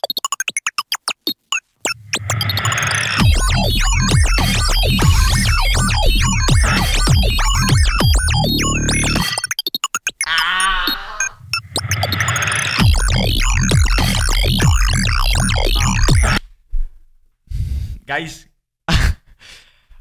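Live loop-station beatbox routine: layered vocal beats with a heavy bass line, run through effects. Rapid stuttering cut-ups near the start and again around nine seconds in, a wavering pitched effect passage just after, and the beat breaking down into sparse chopped hits over the last few seconds.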